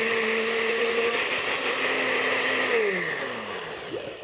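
Countertop blender running, pureeing charred tomatoes, onion and garlic into a sauce. Its motor is switched off near the end, and the whine falls in pitch and fades as the blades spin down.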